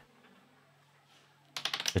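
Near silence, then a quick run of sharp clicks in the last half second.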